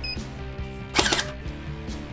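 WELL D-90F electric airsoft gun firing once briefly, a short loud burst of its mechbox cycling about a second in as a trigger-pull gauge pulls the trigger. A short electronic beep comes at the very start, with background music underneath.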